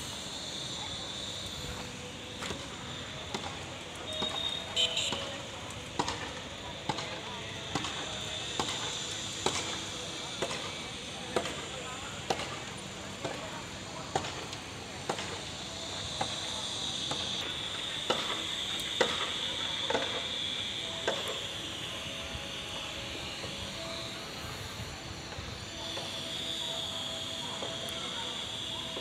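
Footsteps of a person walking on a dusty, gravelly surface at a steady pace, about one step every 0.8 s, fading out in the second half. A steady high-pitched drone runs underneath.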